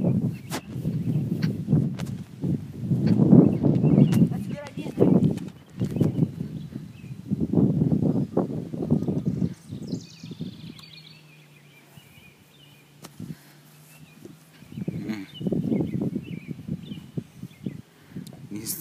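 Indistinct voices talking, with a quieter stretch a little past the middle.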